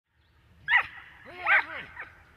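A dog barking twice: a short sharp bark, then a longer bark that rises and falls in pitch.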